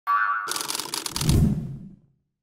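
Animated logo sting sound effect: a short tone, then a bright shimmering sweep with a low bass hit about a second and a half in, fading out.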